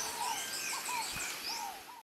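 Birds chirping, a dense run of short rising and falling calls from more than one bird, fading out near the end.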